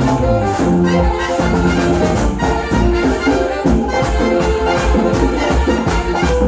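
A live Latin tropical dance band playing an instrumental passage, with held melody notes over a steady beat of hand drums and percussion.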